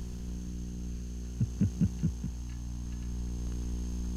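Steady electrical mains hum with a stack of buzzing overtones. About a second and a half in comes a quick run of five short, low pulses.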